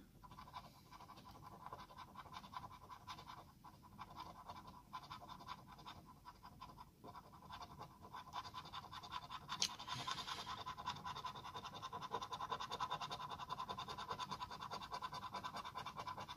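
A coin scratching the coating off a lottery scratch-off ticket in rapid back-and-forth strokes, getting louder about halfway through.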